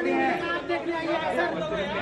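Several men's voices talking over one another in an argument.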